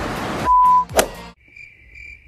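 A short, loud, steady beep, then a sharp hit about a second in, followed by crickets chirping in an even, pulsing trill. This is the comic 'crickets' effect for an awkward silence.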